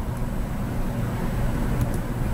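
Steady low rumble of background noise, with a couple of faint clicks near the end.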